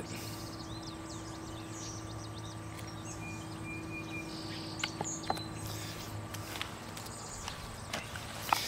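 Outdoor ambience over a steady low hum, with faint, short bird chirps in the first couple of seconds and a brief thin call about three seconds in. A few light clicks come about five seconds in.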